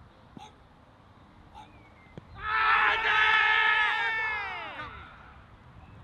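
A faint knock, then several fielders shouting a loud appeal together, their overlapping voices held for about two seconds and falling away at the end. The appeal is not given: the ball was going down the leg side.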